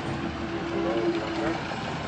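Faint background voices over a steady outdoor vehicle hum. A steady tone holds and stops shortly before the end.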